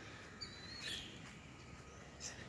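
A small bird chirping: one thin, high whistled note with a slight wobble, about half a second long, starting about half a second in, over faint outdoor background noise.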